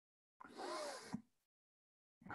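A short, audible intake of breath, about half a second long, ending in a small mouth click.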